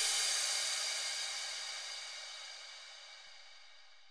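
A song's ending: a cymbal wash rings out over faint low notes and fades steadily away to almost nothing.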